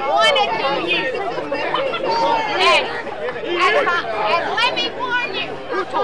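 Speech only: a woman preaching in a raised voice, with crowd chatter around her.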